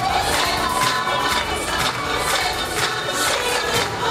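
Live theatre audience cheering and screaming loudly over a band playing music with a steady beat.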